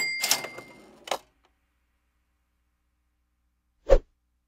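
Cash-register 'ka-ching' sound effect: a clatter with a ringing bell tone at the start, then a short click about a second in. A brief thump near the end.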